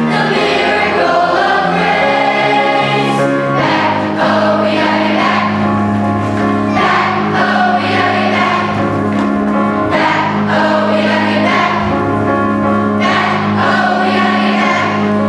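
A large children's choir singing in unison over instrumental accompaniment, sustained notes carried over a steady bass line.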